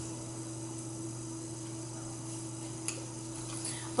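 Steady low electrical hum over faint hiss of room tone, with one short click nearly three seconds in.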